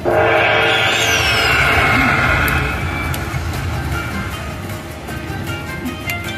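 Silk Road slot machine playing its bonus-trigger music as six coin symbols set off the Hold & Spin feature: a sudden loud burst of chiming tones with a falling sweep about a second in, easing off after about three seconds.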